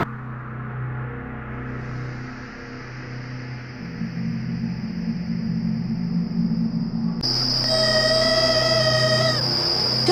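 A low steady droning hum with a high, thin trill that fades in about two seconds in and gets much louder about seven seconds in; a held, pitched tone sounds over it for about two seconds near the end.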